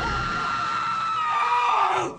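A woman's long, very high scream, held at one pitch, sliding down near the end and then cut off abruptly.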